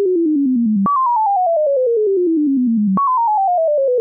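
Sine-wave oscillator of the Moog Modular V software synthesizer, its pitch driven by a sample-and-hold clocked over a descending sawtooth: a pure tone stepping down in pitch about ten small steps a second, from high to low, in a staircase pattern. It jumps back to the top about a second in and again near three seconds, then steps down again.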